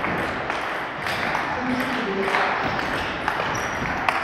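Table tennis rally: the celluloid ball clicking off the bats and the table, roughly one hit every half second, ringing in a reverberant hall.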